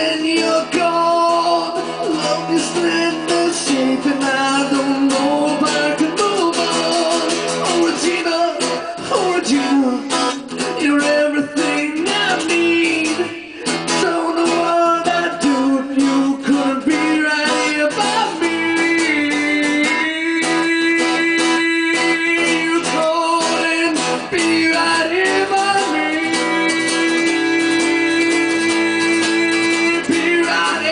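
Fast strummed acoustic guitar with a harmonica solo played over it, in long held notes and chords, some of them bent in pitch.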